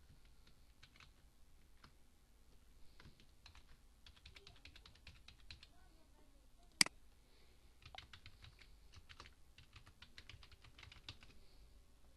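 Computer keyboard being typed on, faint key clicks in short runs, with one much louder click about seven seconds in.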